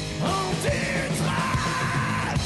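Live rock band playing, with electric guitars, bass guitar and drums, while the singer's voice comes in about a quarter second in, stepping up in pitch and then holding one long high note.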